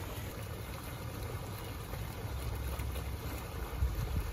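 Wind rumbling on the microphone over a steady outdoor hiss, with a brief thump near the end.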